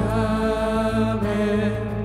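Live worship band playing a slow song, with voices holding a long sung note over keyboard and acoustic guitar.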